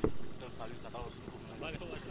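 Faint, distant voices over a low, steady background rumble, between bursts of commentary.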